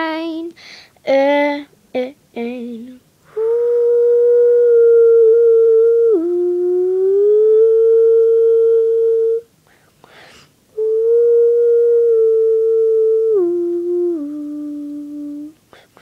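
A female voice singing unaccompanied: a last wavering sung phrase, then two long held hummed notes, the first dipping in pitch and slowly rising again, the second stepping down twice near its end, with a breath between them.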